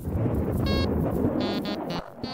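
Homemade modular synthesizer playing a low, noisy rumble under short, buzzy electronic beeps: one a little after the start and a quick run of several near the end.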